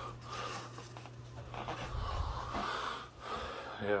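A person's breathing close to the phone microphone, with soft rustling from handling, over a faint steady low hum.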